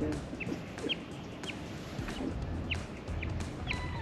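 A bird calling in a series of short, high, falling chirps about every half second, over a low steady hum.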